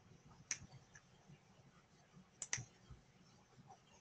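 Computer mouse clicks in near silence: one click about half a second in and a quick double click about two and a half seconds in.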